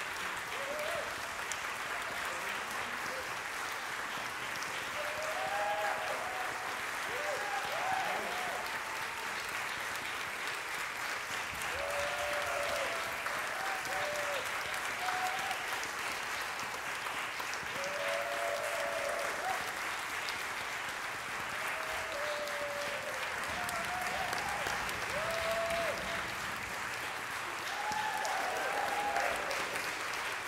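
Audience applauding steadily, with scattered voices calling out over the clapping.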